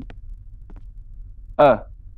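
A low steady hum of room tone, with a man's brief spoken "er" about a second and a half in.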